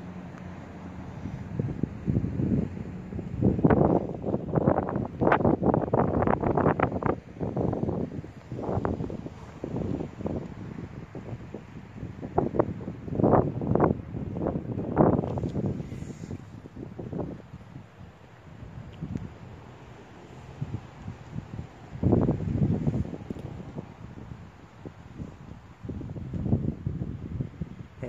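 Wind buffeting the microphone in irregular gusts, a rough rumbling rush that comes and goes, heaviest a few seconds in and again around the middle.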